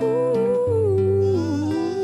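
Wordless humming of a slow, wavering melody over acoustic guitar, the guitar's low notes changing every half second or so.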